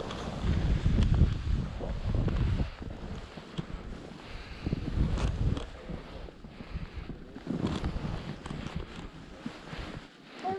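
Wind buffeting the microphone of a skier moving fast through fresh powder, a low rumble that comes in uneven gusts, strongest in the first few seconds and again around the middle and near the end, over a steady hiss of skis through snow.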